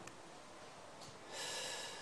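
A quiet pause in which a person takes one short, hissy breath close to the microphone, about a second and a half in.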